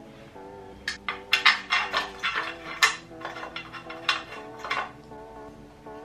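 A run of sharp metallic clinks and taps for about four seconds as metal parts are handled on a pit bike engine during reassembly, over steady background music.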